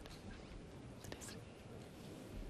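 Faint hall ambience with soft, indistinct murmuring and a few light clicks a little after a second in.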